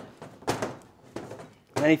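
C.K Armourslice SWA cable stripper being turned around a steel wire armoured cable, cutting the sheath: a short scrape of the blade about half a second in, then fainter scraping and a small click.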